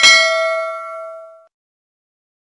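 Notification-bell chime sound effect from a subscribe-button animation: one bright ding that rings out and fades away within about a second and a half.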